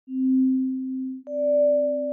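Electronic sine-wave tones of a logo sting: a steady low tone, joined a little after a second in by a higher tone that starts with a soft click, the two held together as a chord.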